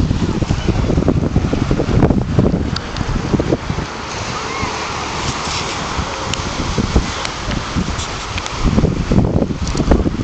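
Wind buffeting the camera's microphone in gusts, over small waves breaking on the shore, with faint voices in the background.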